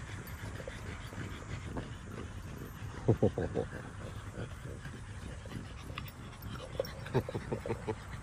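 French bulldog puppies giving short growls and yaps as they play over a sandal: a quick burst about three seconds in and several more near the end.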